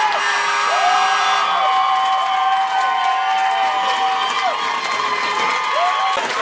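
Rink crowd cheering a goal, with long, high-pitched held screams and whoops that rise at their starts and fall away at their ends.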